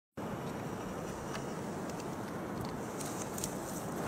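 Steady outdoor background hiss with a few faint clicks.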